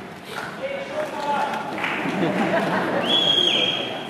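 A man speaking into the stage microphone in a large hall, thanking the audience. About three seconds in, a high steady electronic tone comes in, dips briefly in pitch, then holds.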